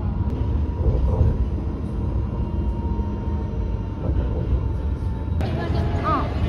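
Sydney light rail tram running, heard inside the passenger cabin: a steady low rumble with a thin, constant whine. About five and a half seconds in, it cuts off abruptly.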